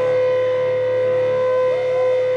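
Electric guitar holding one steady, ringing note through its amp, sustained like feedback, with no change in pitch.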